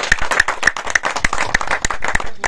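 A small group of people applauding, with many quick, uneven hand claps overlapping.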